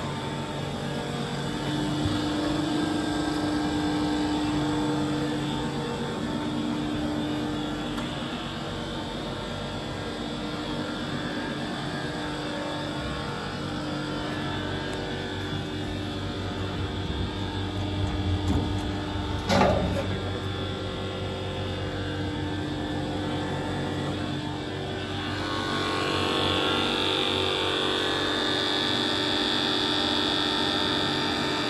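Tacchella 1623U cylindrical grinder running: a steady machine hum with several held tones from its motors. A single sharp knock comes about two-thirds of the way through, and a higher whine joins in near the end.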